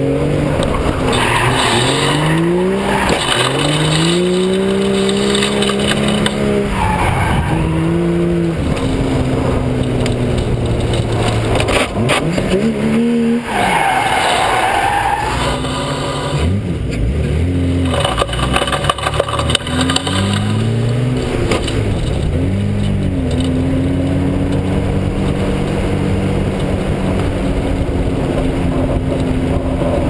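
BMW E30 325's straight-six engine revving up and falling back repeatedly as the car is drifted, with the tyres squealing in several bursts. The loudest squeal comes about 14 seconds in.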